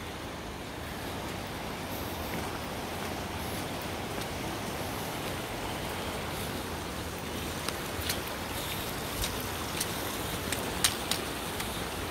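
The Langtang River rushing steadily past the bank, an even water noise. In the second half, a handful of sharp clicks from stones knocking underfoot on the rocky shore.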